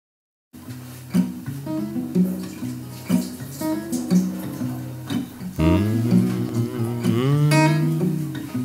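Instrumental opening of a folk song: an acoustic guitar picking single notes about once a second after a brief silence. About halfway through, a sustained lower tone swells in beneath the guitar.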